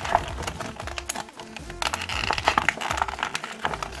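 Clear plastic blister tray crinkling and clicking in irregular snaps as fingers try to pry out a small metal mini figure that is stuck tight in it. Background music runs underneath.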